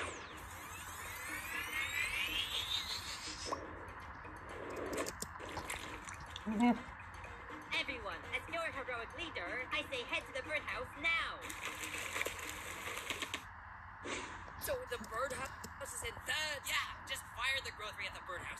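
Cartoon soundtrack playing: background music with bubbly, chirping sound effects, and a rising sweeping whine in the first few seconds.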